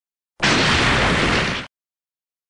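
An edited-in explosion sound effect lasting just over a second. It starts and cuts off abruptly, with dead silence on either side.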